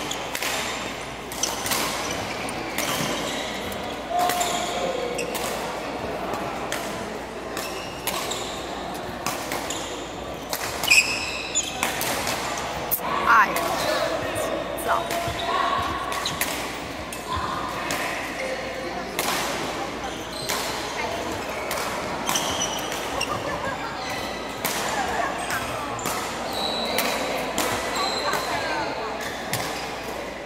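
Badminton rallies: repeated sharp racket strikes on the shuttlecock and short shoe squeaks on the court floor, over steady background chatter.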